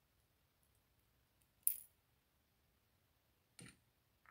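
Small brass lock pins from a disassembled euro cylinder clicking as they are taken out and dropped into a pin tray: a sharp click with a short metallic ring about two seconds in, another click near the end, and a few faint ticks.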